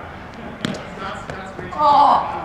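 One sharp smack of the Spikeball ball being hit during a rally, about two-thirds of a second in, followed by players' shouts, the loudest one near the end as the point ends.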